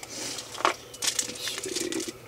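Rustling and a few light knocks of cardboard dividers and packaging being handled and put back into a cardboard box.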